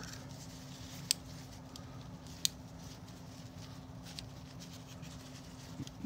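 Faint handling of a plastic fashion doll as a skirt is fitted onto it, with two sharp clicks about one second and two and a half seconds in.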